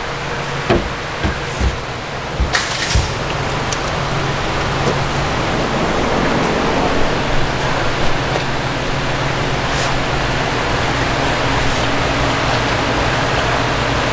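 A steady rushing noise with a low hum, the background of a working shop. A few sharp metal clinks and knocks come in the first three seconds as exhaust header parts are handled.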